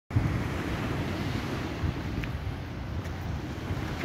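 Wind buffeting the microphone as a steady, uneven low rumble, over a fainter hiss of small waves breaking on the shore.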